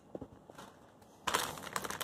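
Clear plastic bag of wiring crinkling and crackling as it is handled, starting about a second in after a few faint ticks.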